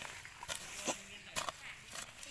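A flat metal digging blade chopping into dry soil, four strikes about half a second apart, each with a scatter of loose dirt.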